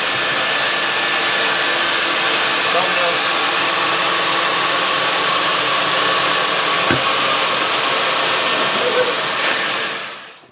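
Vacuum running through a hose and wand as it sucks dryer lint off a tile floor: a loud, steady rushing hiss with a faint high whine. One short click about seven seconds in.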